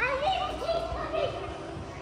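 A child's voice calling out while playing: one short call that drops sharply in pitch at the start and then wavers for about a second.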